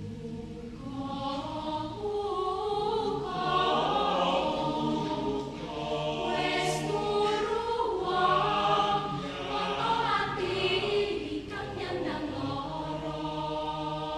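Mixed choir singing a folk-song arrangement: low voices hold steady notes underneath while higher voices enter about a second in and carry moving melodic lines.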